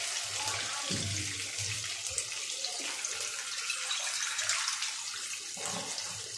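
Water poured in a steady stream from a bowl into a wok of chicken and potato curry, splashing into the cooking curry.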